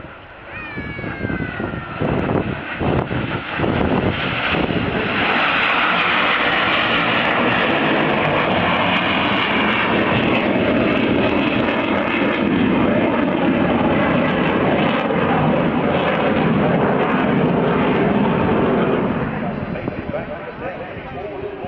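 Loud roar of a display aircraft's engines as it passes low and climbs away, building over the first few seconds, holding steady, then easing off near the end.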